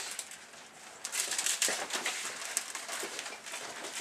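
Plastic wrapper of a Fig Newtons package crinkling as it is handled, a crackly rustle that starts about a second in.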